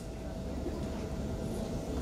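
A pause in speech over a public-address system: a steady low rumble of background room noise with a faint steady hum.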